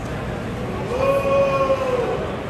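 A long drawn-out shout from a spectator, one held note that rises at its start about a second in and then slowly sinks, over the steady noise of the ballpark crowd.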